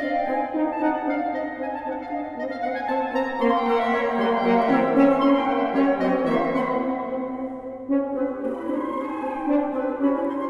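Wind quartet of flute, clarinet, French horn and bassoon playing live in a fast movement, several sustained lines at once. It grows louder with low notes in the middle, drops away briefly and comes back in just before the end.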